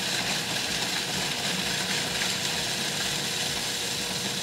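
Food processor running steadily, its motor and blade grinding graham crackers into fine crumbs.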